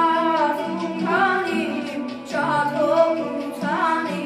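A boy singing an Armenian ashugh song into a microphone, in long phrases of wavering, ornamented notes with a short break between them.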